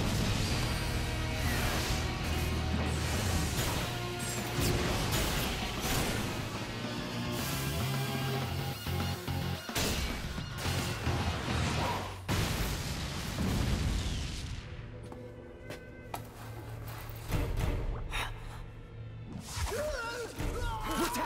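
Background music from an animated action scene, mixed with sound effects of an explosion and crashes. Sharp hits stand out now and then over the music.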